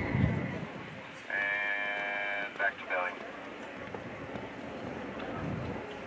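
A horse whinnying: one held, high call lasting about a second, broken off into two shorter calls. A low rumble comes right at the start.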